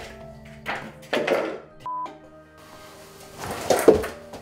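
Background music with thuds of a person jumping and landing on a wooden floor, the loudest about a second in and just before the end. A short high beep sounds about two seconds in.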